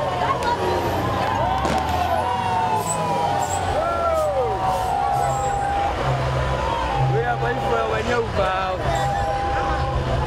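Crowd voices shouting and calling over the low engine rumble of an armoured police truck and other vehicles driving slowly past. From about halfway through, a steady horn tone sounds on and off several times.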